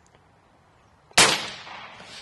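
Umarex Gauntlet .30-calibre pre-charged pneumatic air rifle firing a single 44-grain pellet: one sharp, loud shot about a second in that dies away over most of a second.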